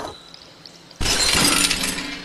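A sudden shattering crash about a second in, like something breaking, lasting about a second and fading.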